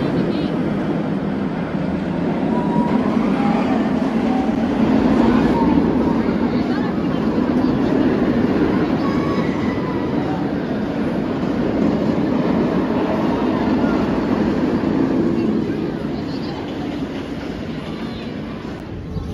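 Wooden roller coaster train (Cedar Point's Blue Streak) running down its drop and along the wooden track, a loud, steady noise of its wheels on the wooden structure, with voices over it.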